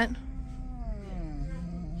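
An elderly domestic cat gives one long, low meow that slowly falls in pitch and lasts nearly two seconds.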